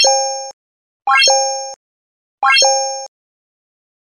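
Three identical synthesized button sound effects, about a second and a quarter apart: each is a quick rising sweep that settles into a short, steady two-note chime and fades. These are the click sounds of an animated like, subscribe and notification-bell end screen.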